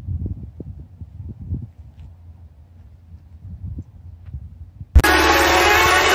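Wind buffeting the microphone, an uneven low rumble, with a couple of faint taps. About five seconds in, loud electronic dance music starts abruptly.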